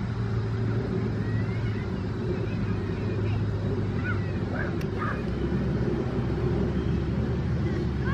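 Steady low rumble of outdoor background noise, with a few faint high chirps in the middle and a single click near five seconds.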